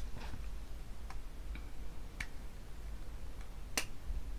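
Light clicks and taps as a boxed plastic blush compact is handled and opened: about five separate clicks, the sharpest near the end.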